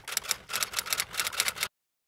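Typewriter-key clicking sound effect: a rapid run of sharp clicks, roughly ten a second, that stops abruptly shortly before the end.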